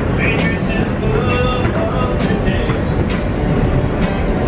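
A subway busker singing to his own acoustic guitar inside a moving subway car, over the loud rumble of the train.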